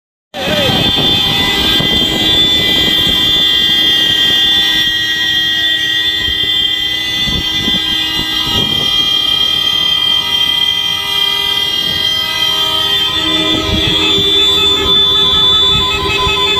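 Several vehicle horns held down together in long, steady overlapping blasts. About three-quarters of the way through, another lower horn joins in, and near the end a horn beeps in rapid pulses.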